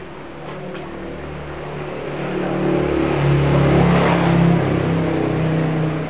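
A motor vehicle's engine passing close by: it grows louder over a few seconds, peaks about two-thirds of the way in, and fades near the end.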